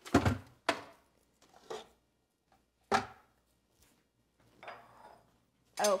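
A few separate knocks and thumps of things being handled on a kitchen counter: a heavy thump at the start, then lighter knocks, the sharpest about three seconds in.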